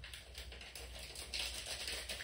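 A metal spoon stirring matcha in a glass, clinking lightly against the glass about five times a second, faster and brighter in the second half.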